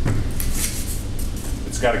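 Soft rustles and light clicks from a hand-held fire extinguisher being turned and set on a workbench, over a steady low hum. A man's voice starts near the end.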